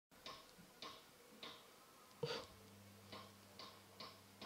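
A child's small wooden mallet tapping lightly, about six sharp knocks at uneven half-second intervals, the fourth the loudest. A faint steady low hum starts about halfway through.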